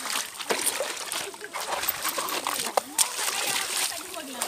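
Feet wading through a shallow river, water splashing and sloshing at each irregular step, with people's voices in the background.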